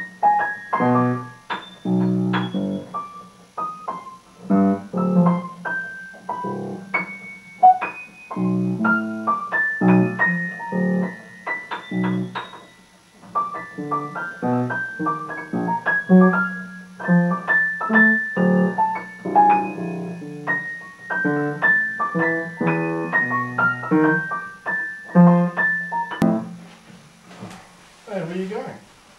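Upright piano played four-handed as a duet: chords and single notes in an uneven rhythm, stopping about two seconds before the end.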